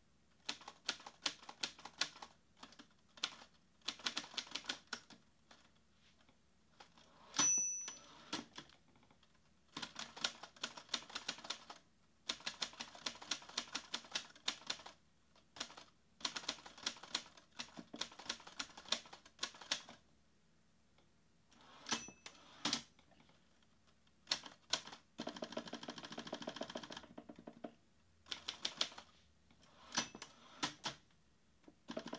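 Manual typewriter typing in bursts of rapid key strikes with short pauses between them. A bell rings about seven seconds in and again around twenty-two seconds in, and a longer rattling stretch follows near the end.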